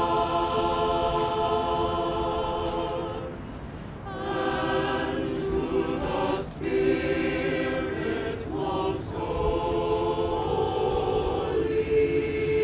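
A choir singing slowly in long held chords, the phrases broken by short pauses about four, six and a half, and nine seconds in.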